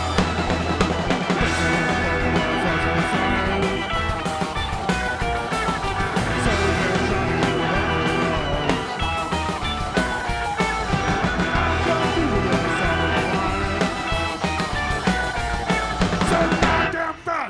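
Live rock band playing loudly and steadily, with electric guitars and drums.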